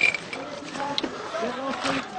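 Men's voices, indistinct and not close to the microphone, with a few short, sharp clicks, one at the start and one about a second in.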